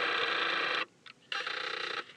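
Camera zoom-lens motor whirring steadily as the lens zooms in: one run stops about a second in, and a second run starts about half a second later.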